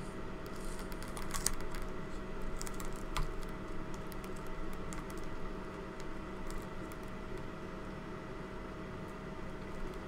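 Small clicks and scratching from hands handling wires on a flight controller board, clustered in the first three seconds or so with a few more later, over a steady hum.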